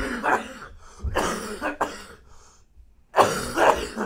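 A person coughing in repeated fits: a couple of coughs at the start, more about a second in, and the loudest about three seconds in.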